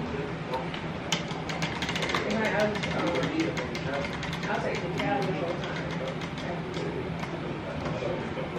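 Prize wheel spinning, its rim pegs clicking rapidly against the pointer; the clicks start about a second in and slow down as the wheel comes to rest.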